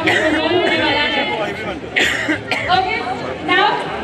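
Speech: a host talking into a handheld microphone, with chatter from the crowd around, and a brief sharp sound about halfway through.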